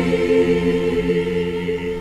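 Mixed choir of men's and women's voices singing a long held chord that gradually fades away.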